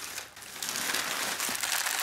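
Crinkly plastic snack bag rustling irregularly as it is handled.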